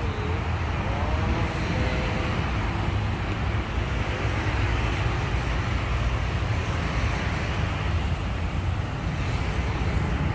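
Steady city road traffic: cars and motorcycles passing on a multi-lane street, a continuous low rumble of engines and tyres.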